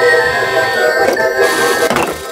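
Toy claw machine playing its built-in circus-style tune, a tinny electronic melody over a steady beat. A light plastic clatter comes near the end as the egg capsule drops into the prize chute.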